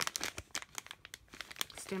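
Clear plastic packaging bag crinkling as it is handled, in a quick, irregular run of crackles.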